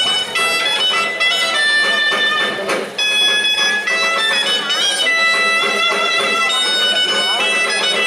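Folk dance music led by a loud, reedy wind instrument playing a melody of short held notes.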